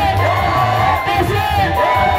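Live kigooco (Kikuyu gospel) music with a heavy steady bass, and a crowd singing and shouting along.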